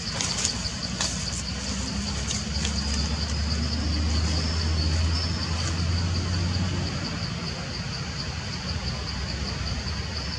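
A low engine rumble that swells for a few seconds in the middle and then eases off, over a steady high-pitched buzz.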